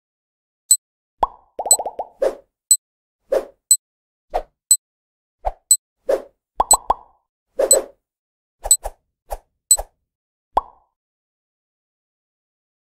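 Cartoon-style pop and click sound effects from an animated logo intro: about twenty short plops in an uneven rhythm, some with a quick upward bend in pitch, and a fast little rattle about two seconds in.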